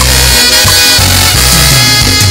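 A Christian praise band plays an upbeat instrumental passage with no singing. A loud, full chord comes in at the start over a steady, pulsing bass line.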